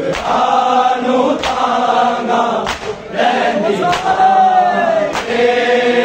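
A large group of men chanting a Punjabi noha lament in unison, with their palms striking their bare chests together in matam about every 1.2 seconds, a sharp slap on each beat.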